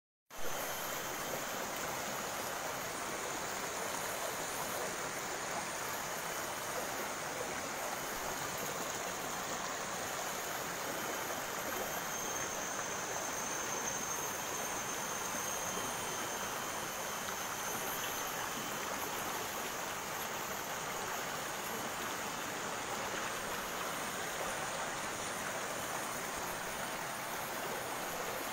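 Shallow rocky river flowing steadily over and around boulders, a constant even wash of water.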